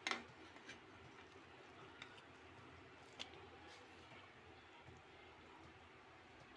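Near silence with a few faint clicks and soft scrapes of a metal spoon against the pressure cooker and its rice as egg masala is laid on, the sharpest click right at the start and another a little past three seconds in.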